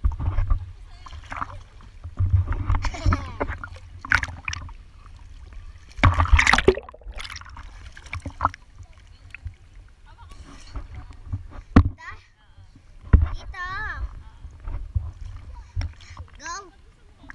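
Pool water splashing and sloshing right at a camera held at the water's surface by a swimmer, over a low rumbling handling noise. The loudest splash comes about six seconds in.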